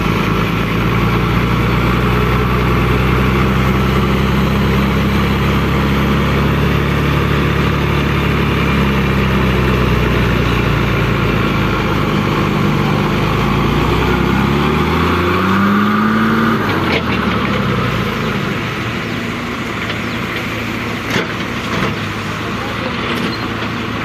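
Tipper truck's diesel engine labouring under load as the truck pulls its rear wheels out of soft mud: steady revs at first, then revving up over a few seconds before the sound breaks off abruptly past the middle, leaving a lower, rougher rumble with a couple of knocks.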